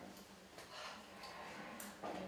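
Quiet room tone with a faint steady hum, broken by two light clicks, one just after the start and one near the end.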